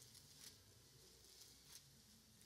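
Near silence: room tone, with two faint brief rustles, one about half a second in and one near the end.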